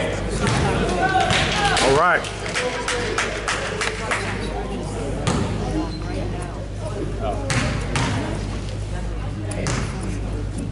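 A basketball bouncing a few separate times on a hardwood gym floor, echoing in the large hall, with spectators' voices underneath.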